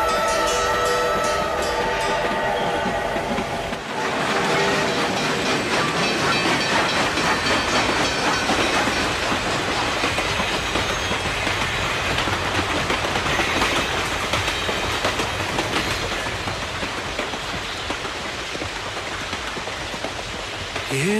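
A song's music ends about four seconds in and gives way to a steady, loud rushing noise with a fine, rapid crackle: a recorded sound-effect passage between songs.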